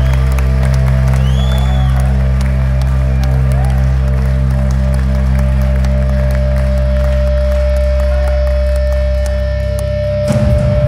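Live rock band holding a loud, steady low drone on electric bass and guitar through the amplifiers, with crowd cheering and a whistle over it. A steady higher guitar note joins about halfway through.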